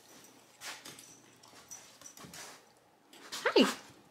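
A small Bichpoo puppy making two or three faint, short breathy sounds close by. Near the end comes a woman's loud, high 'Hi' that falls in pitch.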